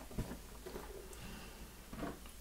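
Faint handling sounds of a soft rubber RC crawler tyre being worked onto a metal wheel half, with one light click near the start.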